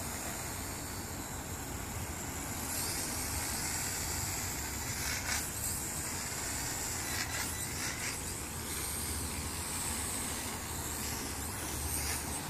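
Ares Ethos QX 130 micro quadcopter's motors and propellers buzzing in flight, a high hiss that gets louder about three seconds in, over a steady low rumble.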